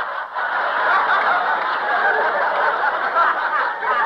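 Studio audience laughing at a punchline, a long dense wave of laughter that thins near the end, on an old radio broadcast recording.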